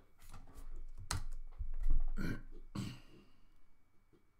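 A handful of computer keyboard and mouse clicks and knocks on a desk, close to the microphone, about six in the first three seconds. The loudest is a heavier thud about two seconds in.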